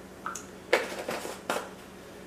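A few short, light clicks and knocks from handling spice containers and a spoon at a ceramic mixing bowl. There is a small ping near the start, then three sharp knocks within the next second, one ringing briefly.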